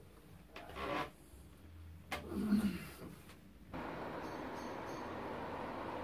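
A quiet room with two brief soft sounds, then, from about four seconds in, a steady outdoor hiss of street ambience.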